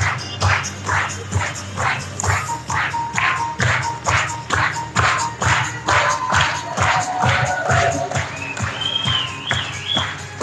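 Live stage music with a strong, regular percussive beat of about two strokes a second and a held melody line that climbs higher near the end.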